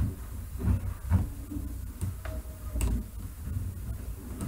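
Scattered faint clicks from a computer mouse as the document is scrolled, over a steady low room rumble.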